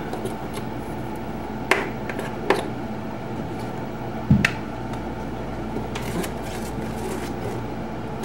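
A few separate sharp clicks and one knock, with a dull thump about four seconds in, as a five-in-one tool chips at ice frozen around a freezer's drain hole. The ice is clogging the drain and making the freezer leak. A steady hum runs underneath.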